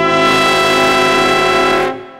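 Brass quintet holding a loud sustained chord that cuts off near the end, leaving the room's reverberation ringing on.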